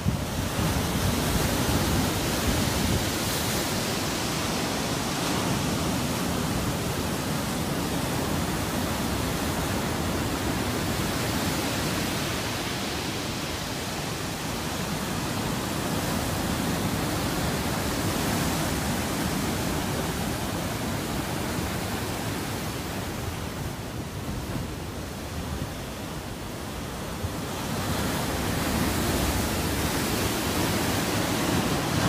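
Storm surf on the Black Sea: large waves breaking and washing over the shore and concrete breakwaters in a steady, dense rushing noise. It eases slightly near the end, then swells again.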